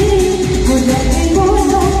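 A singer holding a melody into a handheld microphone in an Odia jatra song, over a musical accompaniment with a steady low bass.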